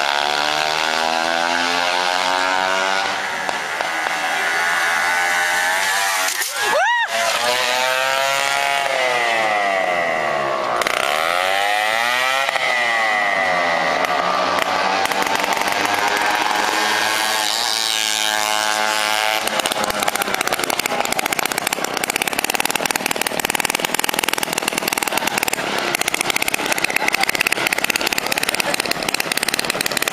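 A moped engine revving and passing close by several times, its pitch sweeping up and down as it goes past, most sharply about seven seconds in. The last third is a rougher, noisier stretch without a clear engine note.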